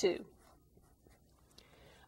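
Faint strokes of a felt-tip marker writing on paper.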